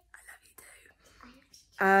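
Quiet stretch with faint whispering, then a woman starts to speak near the end.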